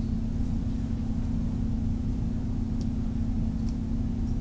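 A steady low hum with background hiss, and a few faint soft ticks about a second in, near three seconds and near the end.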